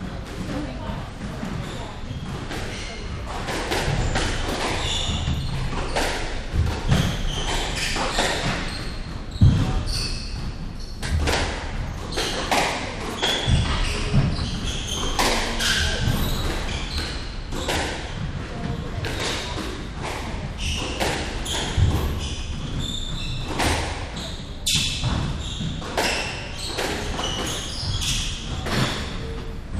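Squash rally: repeated sharp impacts of the ball off rackets and the court walls, irregularly spaced, in a large echoing hall.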